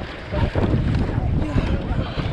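Wind rumbling on the microphone over the wash of water along a rowing eight's hull as the crew eases off to a light paddle after the race sprint, with brief faint voice sounds about half a second and a second and a half in.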